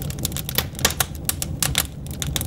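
Fire crackling, with rapid irregular pops over a low steady hum.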